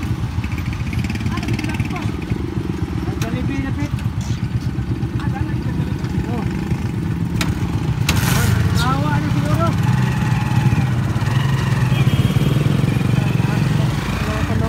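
Small motorcycle-type engine of a tricycle running in slow stop-and-go traffic, a steady low rumble that grows louder about eight seconds in.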